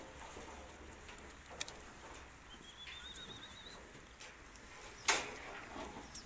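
Quiet ambience of a sheep pen: faint shuffling and a few soft clicks, with a thin warbling bird trill rising in pitch for about a second midway, and a short rush of noise about five seconds in.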